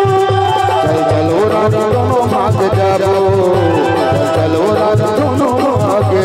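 Live Chhattisgarhi folk band music, amplified through stage speakers: a gliding melody over a steady, even drum beat.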